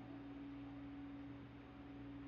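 A handheld clear crystal singing bowl sounding one faint, steady pure tone that holds without fading.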